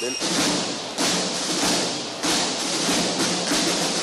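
Ceremonial military drumming, a dense roll with heavy beats about a second and two and a quarter seconds in, cutting in abruptly at the start.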